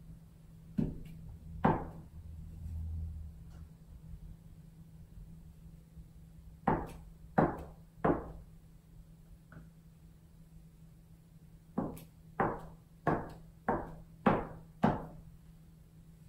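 A paint-coated plastic bottle cap stamped down onto paper on a table, making a series of sharp taps: two near the start, three around the middle, then six in quick succession, about one every half second, near the end.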